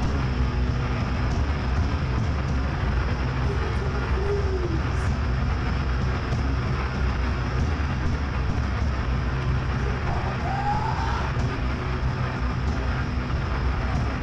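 Steady low droning hum and rumble from a rock band's amplifiers and bass between songs, with two short gliding tones, one about four seconds in and one about ten seconds in.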